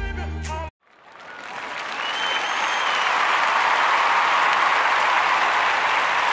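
Music stops abruptly under a second in; after a brief silence, applause swells up over a couple of seconds and then holds steady and loud.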